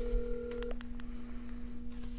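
Phone call ringing tone on speakerphone while the call waits to be answered: a steady electronic tone, with a higher part cutting off under a second in.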